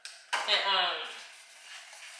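A brief voiced utterance, a single short word or hum with a falling pitch, after a sudden click at the start; the rest is quiet room tone.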